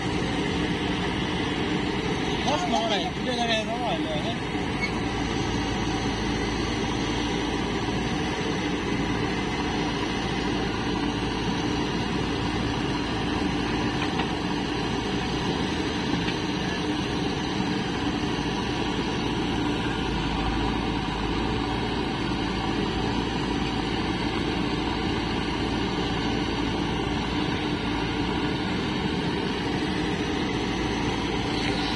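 Diesel engines of a Sonalika DI 740 III tractor and a JCB 3DX backhoe loader running steadily together while the loader fills the tractor's trolley with soil.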